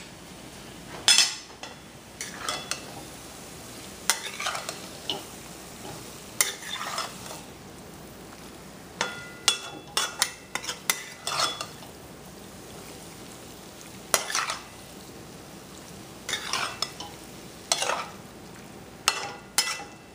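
Metal spatula stirring and scraping chicken pieces in a steel karahi, with irregular scrapes and clinks against the pan every second or two over a steady sizzle of frying. The raw chicken is being cooked in oil with its spices before the tomatoes go in.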